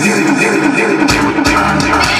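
Dance music played loud through a DJ's Pioneer CD decks and mixer. For the first second the low end is cut, with a wavering pitched line on top, then the bass comes back in.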